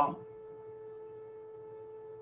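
A faint, steady hum on one fixed pitch with a few weaker overtones runs unchanged under the recording. A man's voice finishes a word just at the start.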